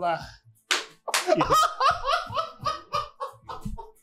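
A man laughing hard in a rapid run of short bursts, starting just after a single sharp smack about three-quarters of a second in.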